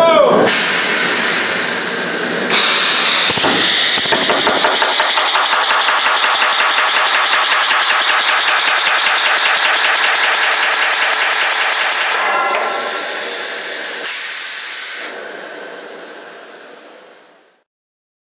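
1880 Allen portable pneumatic riveter hammering rapidly on a red-hot 3/4-inch rivet to form its head on a boiler smokebox seam, a fast, even rattle of blows. The sound changes after about twelve seconds and fades out near the end.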